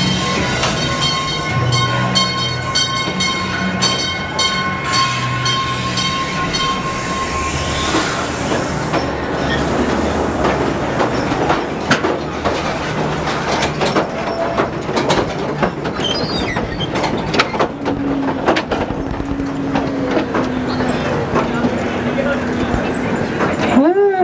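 Music-like steady tones with shifting low notes for about the first seven seconds. Then the mine ride's train cars rumble along the track, with repeated clacks from the wheels on the rails.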